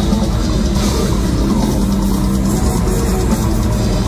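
Death metal band playing live: distorted guitars and a drum kit in a dense, steady wall of sound.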